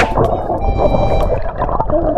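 Underwater audio from a submerged camera: a muffled, continuous rush of water and bubbling around swimmers, heavy in the low end.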